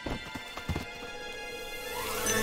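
A few quick, soft thumps like scampering cartoon footsteps within the first second, over quiet background music.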